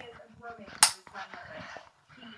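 A single sharp click or tap right at the microphone about a second in, with faint murmuring voice around it.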